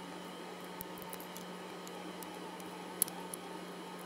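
A 3D-printed nylon test piece being bent in pliers: faint creaking ticks and one short sharp click about three seconds in as its printed layers delaminate without the part breaking, over a steady low hum.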